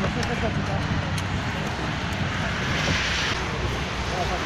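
An engine running steadily, most likely the petrol power unit driving the hydraulic rescue tool, under faint voices. A brief hiss comes about three seconds in.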